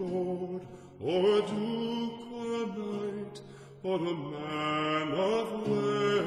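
Music: low voices hold long, wordless, chant-like notes in an interlude of an early-music ballad. New phrases enter about a second in and again near four seconds, each note sliding up into its pitch.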